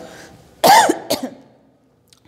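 A woman coughing to clear her throat: one loud cough about half a second in, then a shorter one.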